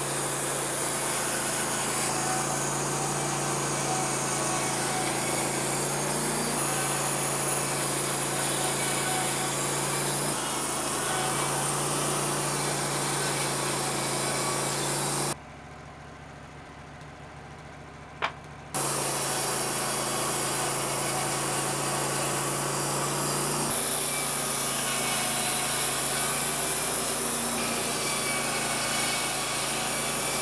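Wood-Mizer LT15 WIDE band sawmill running, its band blade crosscutting through an upright red cedar log to slice off a round cookie: a steady engine hum under the hiss of the blade in the wood. Midway it drops to a much quieter stretch of about three seconds, with a single click, before the sawing resumes.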